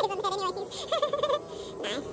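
A man's wavering, strained groan of effort as he pushes a heavily loaded leg press through a rep.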